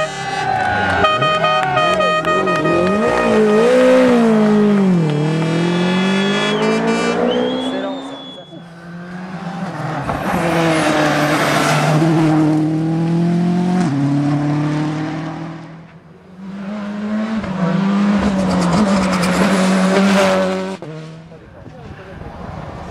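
Rally cars racing past one after another, three separate pass-bys, each swelling and fading. The engines rev hard through the gears, with pitch dropping on lifts and downshifts and climbing again under acceleration.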